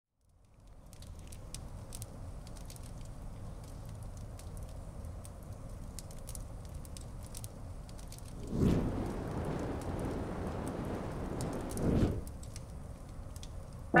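Log fire crackling in a fireplace: a steady low rumble with scattered sharp pops and crackles. About two-thirds of the way in, a louder rush of noise swells up for a few seconds and then drops away sharply.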